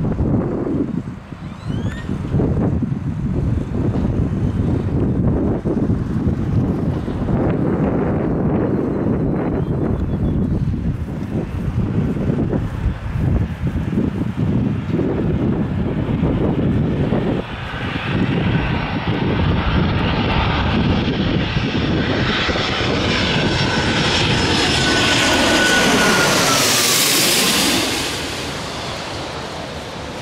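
Twin-engine jet on landing approach passing low overhead. An uneven low rumble gives way, about halfway through, to a rising jet whine that grows louder to a peak near the end. As the plane goes over, a whistling tone drops in pitch, then the sound fades quickly.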